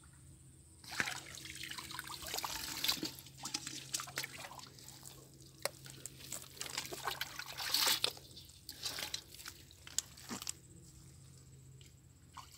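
Shallow ditch water splashing and dripping in irregular bursts as hands grope through it and handle caught fish. It starts about a second in and dies down near the end.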